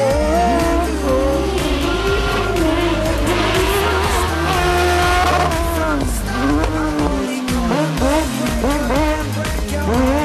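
Fiat 500 race car powered by a Kawasaki ZX-12R four-cylinder motorcycle engine, revving hard with its pitch rising and falling quickly as it weaves through slalom cones, over background music.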